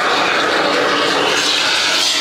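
Aerosol can of expanding spray-foam gap filler hissing steadily as foam is sprayed into a gap.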